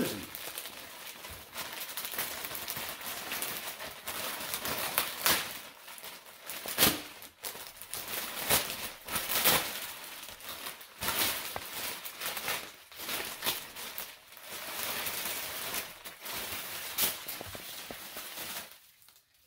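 Clear plastic garment bag crinkling and rustling as a jersey is worked out of it by hand, with irregular sharp crackles throughout, loudest about seven seconds in.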